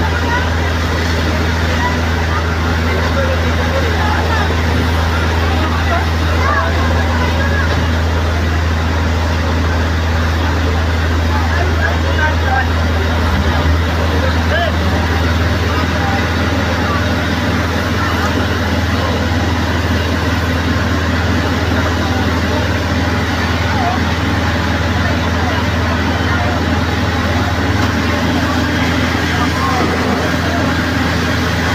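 Fire truck engine running steadily to drive its water pump, a constant deep drone, under the chatter of a crowd of onlookers.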